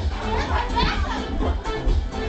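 Dance music with a steady bass beat, with several people shouting and shrieking over it; a high excited cry rises about half a second to a second in.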